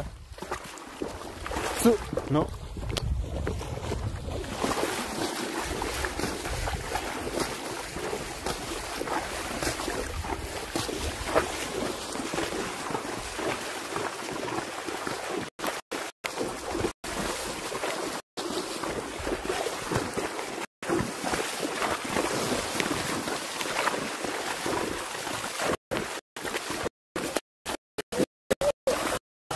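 Horses wading through shallow floodwater, hooves splashing and sloshing steadily, with wind on the microphone. In the second half the sound cuts out in several brief gaps as the low-bitrate live stream drops.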